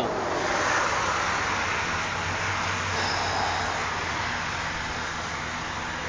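Road traffic: passing vehicles make a steady rush of tyre and engine noise that swells about a second in and again a few seconds later, then slowly fades.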